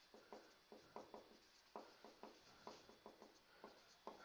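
Faint strokes of a felt-tip marker writing on a whiteboard, an irregular run of short scratches and taps, several a second, as letters are formed.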